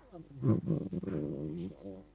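A man's drawn-out hesitation sound, a low held "eee" filler between phrases of speech, fairly quiet.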